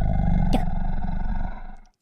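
Dinosaur roar sound effect: one long, deep, rumbling growl that fades away near the end.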